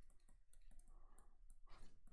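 Faint, sparse clicks and taps of a stylus writing digits on a tablet screen, over near-silent room tone.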